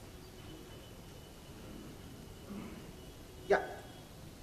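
Quiet hall room tone with a faint steady high-pitched whine and some low murmuring, then a man says a short "Yeah" near the end.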